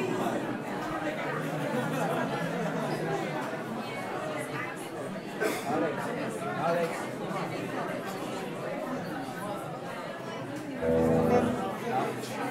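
Audience chatter and talk in a club between songs. Near the end, one loud amplified instrument note rings out for about a second.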